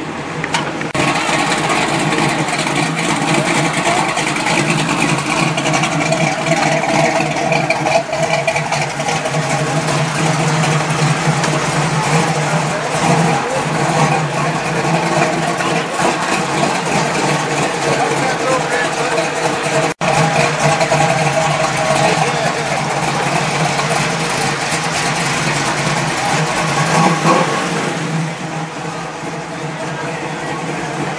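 A car engine running steadily, with people talking around it. The sound drops out for an instant about two-thirds of the way through.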